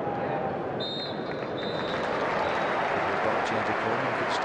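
Referee's whistle blown in two short blasts about a second in, signalling half-time, over the steady noise of a football stadium crowd.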